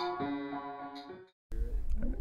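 Piano being played, a few notes ringing and dying away as it fades out a little over a second in. After a brief silence, a low steady hum comes in.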